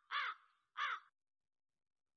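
Crow cawing twice, short harsh calls about two-thirds of a second apart, played as a sound effect.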